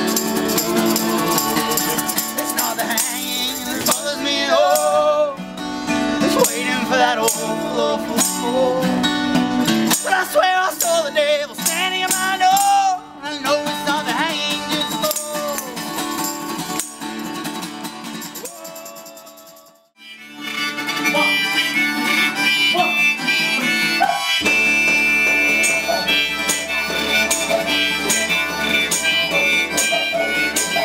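Acoustic folk music with guitar and a wavering melodic lead that fades out just before the middle. A new piece then starts with harmonica, and a deep didgeridoo drone comes in about two-thirds of the way through.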